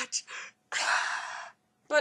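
A woman's mock crying: a couple of short voiced sobs, then one long breathy, gasping sob lasting most of a second.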